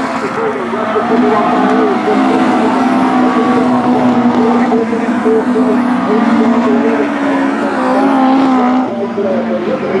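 Several autograss racing cars' engines running hard as they lap a dirt oval, the engine notes wavering up and down.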